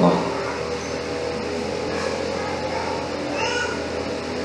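A short, high-pitched animal call about three and a half seconds in, over a steady low hum.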